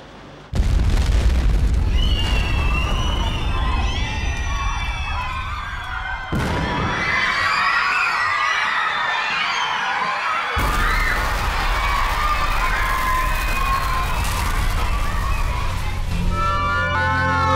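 A bomb blast inside a train station: a sudden deep boom about half a second in that carries on as a low rumble, followed by many people screaming and shouting in panic.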